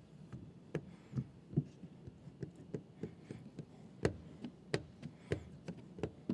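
Squeegee and hands working window tint film against a truck's rear glass: a string of light, irregular taps and knocks, about one or two a second, with a sharper knock about four seconds in.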